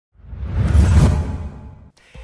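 Whoosh sound effect for an animated logo intro: one rushing swell with a deep low rumble, loudest about a second in, then fading away.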